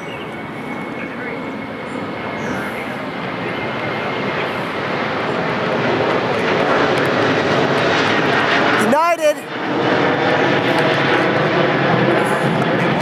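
Twin-engine jet airliner flying low overhead, its engine noise growing steadily louder as it approaches. About nine seconds in, a short pitched sound that bends up and down cuts through briefly.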